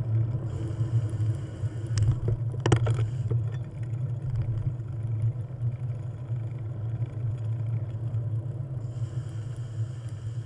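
Steady low drone of a moving vehicle heard from a mounted camera at low speed, with a brief rattling clatter about two and a half seconds in.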